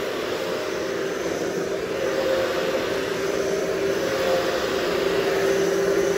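Hoover HushTone upright vacuum running on carpet: a steady motor hum and whine that grows a little louder over the few seconds.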